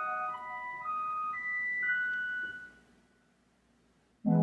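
Church organ playing a slow melody of single high held notes. The last note dies away about two and a half seconds in, leaving near silence.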